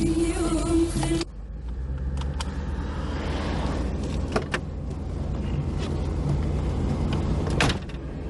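A song with a singing voice cuts off about a second in. A car engine then idles with a steady low rumble, under a few light clicks of the door latch and handle, and a louder knock of the car door near the end.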